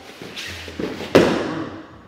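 Bodies shuffling and scuffing on foam grappling mats, with one thump about a second in as a grappler is taken down onto the mat.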